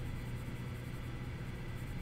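Steady low hum with a faint even hiss: room tone, with no distinct pencil strokes standing out.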